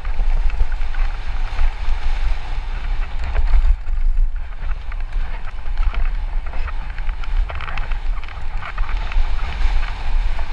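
Mountain bike descending a dry dirt trail at speed: wind buffeting the camera microphone with a deep rumble, over a constant crackle and rattle of tyres on loose dirt and gravel and the bike shaking over the bumps.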